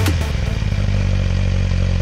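Motorcycle engine running at a steady note, with no rise or fall in pitch.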